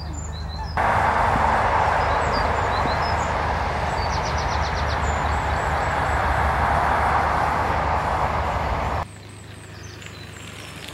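A loud, steady rushing noise that starts suddenly about a second in and cuts off suddenly near the end, over the low, steady hum of an idling narrowboat engine, with birds chirping.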